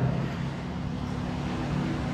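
A steady low hum with a faint even hiss underneath, unchanging throughout: background room tone.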